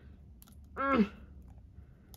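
A few light clicks of fingers and nails on a gold cosmetic compact as its stiff lid is pried open. About a second in comes a short hummed "mm" of effort.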